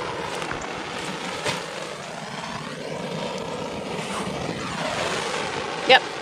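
Propane torch flame hissing steadily as it burns holes in plastic weed-barrier fabric, its tone slowly shifting as the torch is moved.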